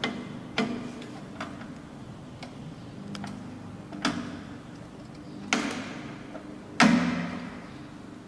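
Clicks and knocks of the wire feeder's drive-roll mechanism on a handheld fiber laser welding machine, its tension arms and parts being worked by hand. There are about seven separate sharp clicks, the loudest a knock about seven seconds in, over a steady low hum.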